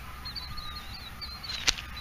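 Low wind rumble on the microphone, with a faint high wavering call repeating in short pieces and a single sharp knock near the end.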